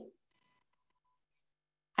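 A quiet pause holding only a very faint electronic tone, broken into a few short beeps for about half a second, starting about half a second in.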